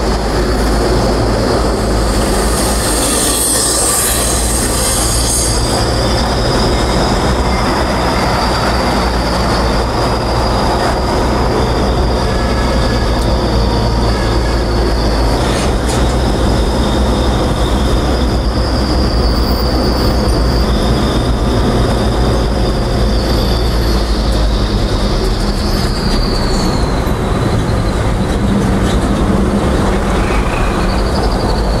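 Steady engine and road rumble from a moving vehicle driving in traffic, with a thin high whine running through it that slides down in pitch near the end.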